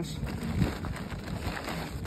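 Wind rumbling on the microphone, with light handling noise as a corrugated RV sewer hose and its plastic fittings are lifted and moved.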